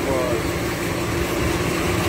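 A construction machine's engine running steadily nearby: a constant drone with a low, even hum that does not change.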